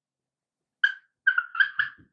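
Marker squeaking on a whiteboard as letters are written: about four short, high squeaks, starting about a second in.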